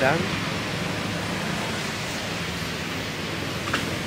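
Steady rushing noise of road traffic, with a vehicle engine's hum fading away over the first couple of seconds.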